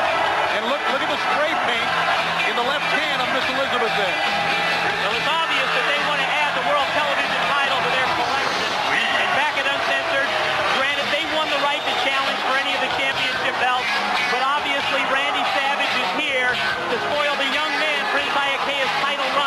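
Music playing over the steady noise of a wrestling arena crowd, many voices blending without any single clear speaker.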